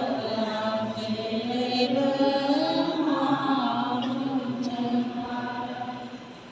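Church congregation singing a slow hymn, with long held notes that glide from pitch to pitch. The singing eases off near the end.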